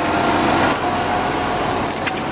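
Steady street traffic noise: an even hum of vehicle engines and road noise from taxis and a city bus close by.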